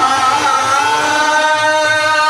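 Qawwali: a voice slides up into one long held note, with soft, regular hand-drum beats beneath.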